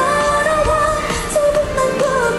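K-pop song playing, a woman's voice singing long held notes over the backing track, moving to a new note about one and a half seconds in.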